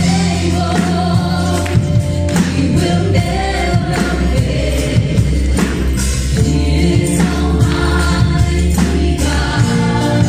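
Live gospel worship song: a group of singers in unison over a band of drum kit, bass guitar, acoustic and electric guitars and keyboard, playing continuously.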